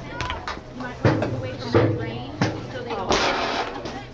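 Voices calling out during a soccer game, with three sharp knocks in the middle and a short rush of noise just past three seconds in.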